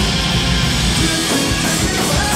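A rock band playing live and loud: electric guitars, a drum kit and keyboards going together without a break.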